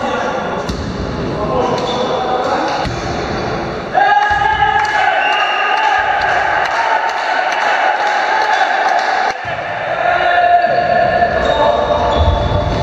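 A volleyball bouncing on a sports-hall floor, with players' voices. From about four seconds in, a steady pitched tone holds for about five seconds and then cuts off.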